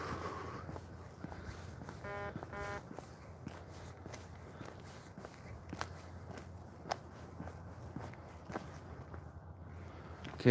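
Footsteps of a person walking in sneakers on an asphalt path, soft and uneven, with a few sharper clicks. Two short pitched tones sound a little over two seconds in.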